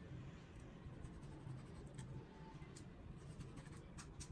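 Knife slicing raw beef on a wooden cutting board: faint, scattered scraping strokes and light taps of the blade on the board, over a low steady hum.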